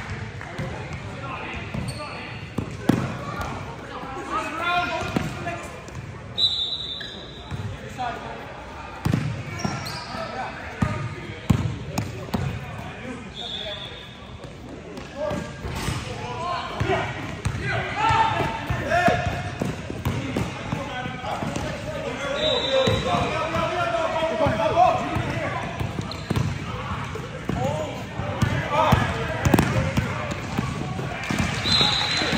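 Basketball game on a hardwood gym floor: the ball bouncing in repeated thumps, a few short high sneaker squeaks, and players and spectators calling out, most in the second half.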